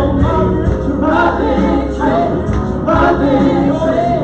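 Live worship band playing a song: several voices singing together into microphones over acoustic guitar and a Kawai MP7 stage piano, loud and steady.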